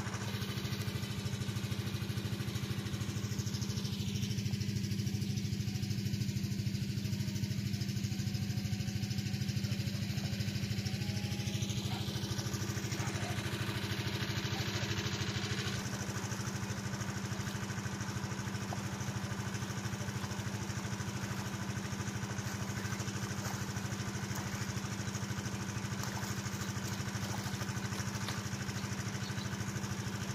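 Irrigation water-pump engine running steadily, a low, even drone that does not change.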